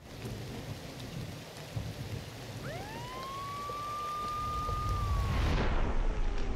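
Heavy rain falling steadily. About halfway through, an ambulance siren rises into one long wail, holds, and falls away near the end, while a deep rumble grows louder.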